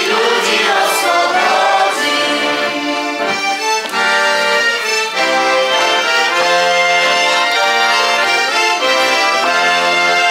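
A choir's singing ends about two seconds in, and a folk band carries on with an instrumental tune led by accordion, with clarinet.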